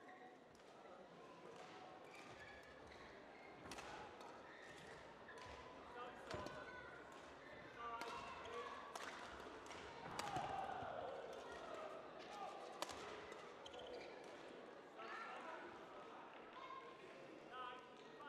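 Badminton rally: racket strikes on the shuttlecock and players' footsteps on the court, sharp knocks a second or two apart, echoing in a large sports hall, with faint voices in the background.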